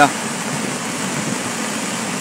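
High waterfall in full flood after heavy rains: a steady, even rush of falling water.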